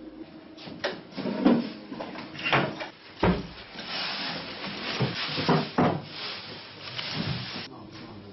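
Knocks and bumps from a wooden cupboard or furniture door being handled while things are rummaged through, about seven sharp knocks spread across the clip and a spell of rustling in the second half that cuts off near the end.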